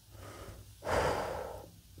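A man breathing audibly close to a lapel microphone: a faint breath, then a louder one lasting under a second, starting about a second in.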